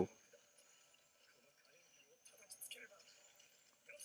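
Near silence: quiet room tone, with a faint, brief snatch of speech about halfway through and again just before the end.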